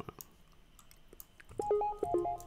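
A few faint clicks over near silence, then about one and a half seconds in a soft synth melody of short, stepped notes begins: the opening of a trap beat playing back from FL Studio.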